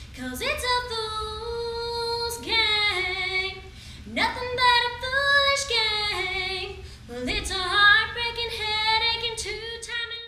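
A lone female voice singing without accompaniment, in long held notes, several phrases opening with an upward slide into the note, over a steady low hum.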